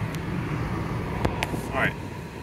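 A 2012 Suzuki Lapin's small three-cylinder kei-car engine idling cold, heard from inside the cabin as a steady low hum, with a few faint clicks.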